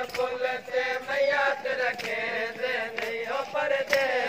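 Men's voices chanting a mourning refrain (noha), held and repeated, with sharp beats about twice a second, typical of matam chest-beating keeping time.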